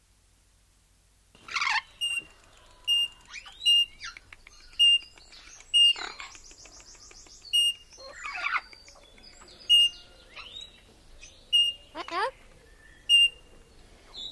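Green-cheeked (red-crowned) Amazon parrot calling: a rhythmic series of short high-pitched whistles, about one a second, with longer sliding calls in between. The calling starts about a second and a half in.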